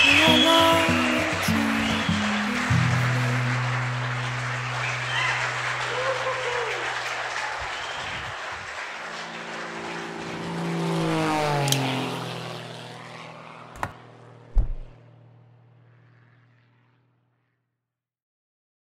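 Wedding guests applauding and cheering over music, fading out over the first ten seconds. Then a logo sound effect: a swelling whoosh like a small plane passing, falling in pitch, followed by a sharp click and a low thump.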